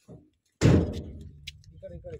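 A van door slammed shut once: a single heavy thud with a short low rumble after it, followed by a light click.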